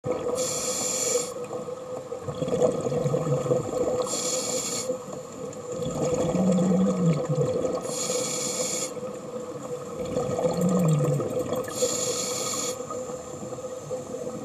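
Scuba diver breathing through a regulator. Each breath starts with a short high hiss of inhaled air, and a low, wavering exhale buzz follows about two seconds later. The cycle repeats about every four seconds.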